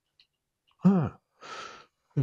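A man's brief voiced 'uh' about a second in, followed by a short breathy sigh close to a handheld microphone.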